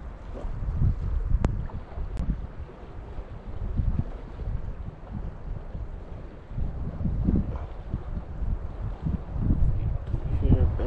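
Wind buffeting the microphone in gusts, a low rumble that rises and falls, with two brief clicks in the first few seconds.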